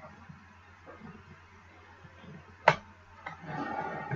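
Hands handling cardstock as a glued pocket is lined up and pressed onto an envelope: mostly quiet at first, then one sharp tap a little past halfway, and a scratchy rustle of card sliding and being rubbed down near the end.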